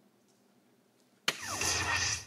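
A soft-tip dart striking an electronic dartboard with a sharp click a little over a second in, followed at once by the machine's loud electronic hit sound effect, about a second long.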